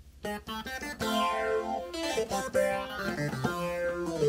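Logic ES2 software synthesizer played from a keyboard: a short line of separate notes with a bright, plucked-sounding attack, a new note every quarter to half second.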